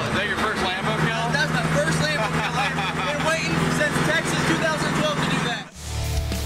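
A crowd of people talking and shouting over one another, no words clear, with a car engine idling as a steady low hum under it. Both cut off suddenly just before the end.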